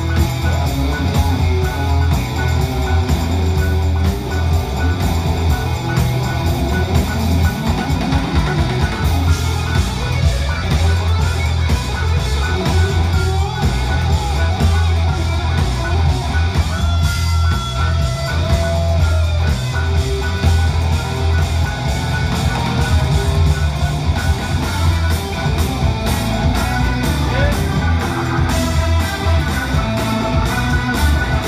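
Live rock-soul band music played back over loudspeakers in a room: electric guitar over a steady drum beat and heavy bass.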